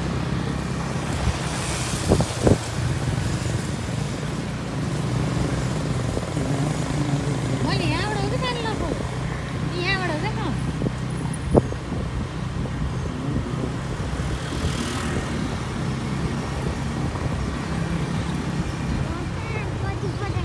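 Steady drone of a vehicle engine and road noise heard while riding along a street, with brief snatches of voices around the middle and a few sharp knocks, two in quick succession early and one more about halfway through.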